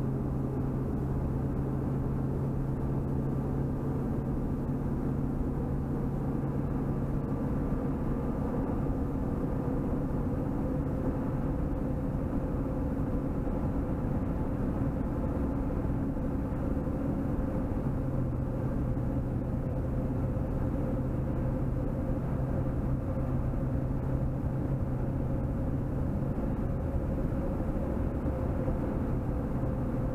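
Steady road and engine noise heard inside a car cruising at highway speed. A low drone runs under it, drops away for about ten seconds partway through, then comes back.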